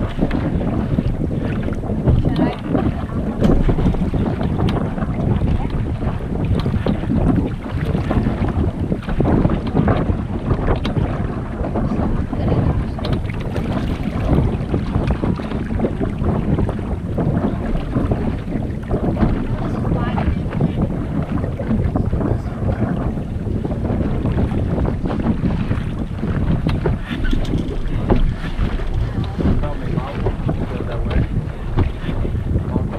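Wind buffeting the microphone in loud, uneven gusts on a sailboat under way, with water rushing along the hull beneath it.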